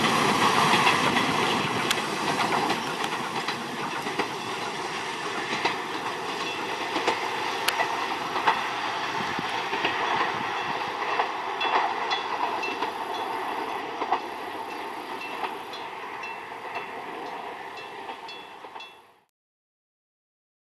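Tokyu 7000-series electric train running away along the track, its wheels clicking over rail joints as the sound slowly fades with distance. A faint high tone repeats evenly for a few seconds past the middle, and the sound cuts off abruptly about a second before the end.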